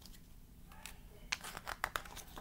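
Paper pages of a picture book rustling as the book is handled and a page is turned, with a few sharp crackles close together in the second half.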